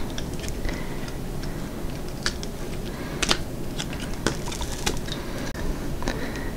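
A flexible silicone mold being bent and peeled off a cured resin coaster, making a run of small, irregular clicks and taps as the mold releases and the hard resin knocks lightly, the sharpest about three seconds in.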